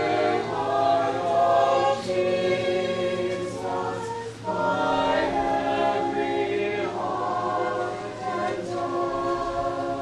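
A choir singing a hymn in long, held phrases, with short breaths between phrases about four seconds and eight seconds in.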